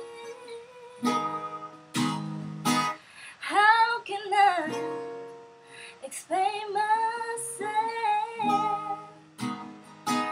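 A woman singing long, bending held notes over a strummed acoustic guitar. The guitar strums alone for the first few seconds before the voice comes in.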